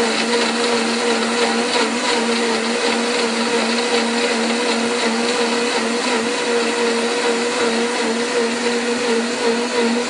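Electric blender running steadily at full speed: a loud, even motor hum over a dense churning noise, with no change in pitch.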